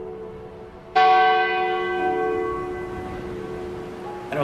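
A church bell struck about a second in, ringing and slowly fading, with a lower bell note joining about a second later.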